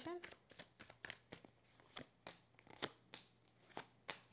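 A tarot deck being handled and cards drawn from it by hand: a quiet, irregular string of soft card flicks and taps.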